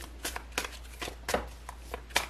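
A deck of tarot cards being handled by hand: cards slid and flicked off the deck, giving a string of light, irregular clicks and snaps.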